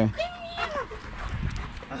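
German shepherd giving a loud yelp and then a drawn-out whining call, the excited vocalising of a happy dog.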